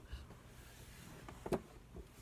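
Quiet room tone with one short, sharp click or tap about one and a half seconds in.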